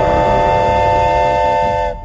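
A train horn sounding one long, steady chord over a low rumble, cut off abruptly near the end.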